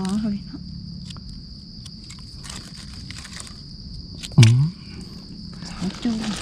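Forest insects droning in one steady, high-pitched band, with faint crackles of leaf litter and twigs as a mushroom is plucked from the ground. A short vocal grunt cuts in about four and a half seconds in and is the loudest sound.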